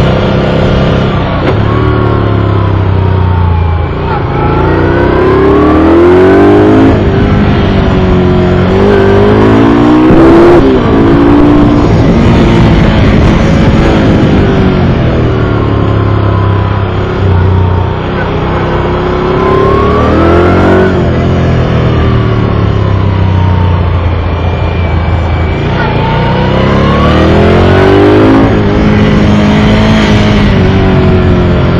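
Moto Guzzi V11 Sport's transverse 90-degree V-twin running hard on track. Its pitch climbs under acceleration and drops back several times, with steadier, lower-pitched stretches in between.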